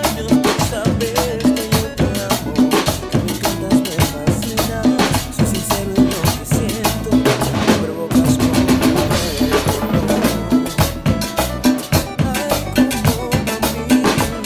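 A Latin percussion section playing a steady cumbia groove together: drum kit, timbales, congas played by hand and a metal güira scraped in rhythm, over a low pitched line. The low part drops out briefly about eight seconds in, then the groove carries on.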